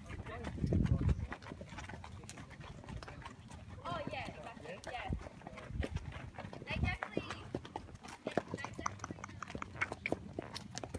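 Horses' hooves clip-clopping at a walk on a dirt track, a run of irregular footfalls, with a brief low rumble about a second in.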